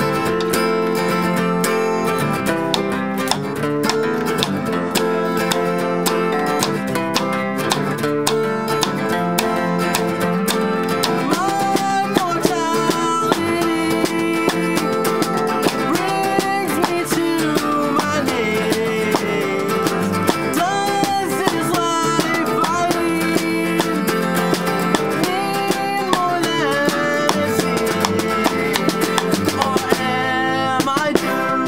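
Two acoustic guitars picked and strummed together in a folk-style song, with a voice singing over them from about twelve seconds in.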